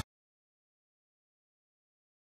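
Complete silence: the audio drops out entirely, right after music cuts off abruptly at the very start.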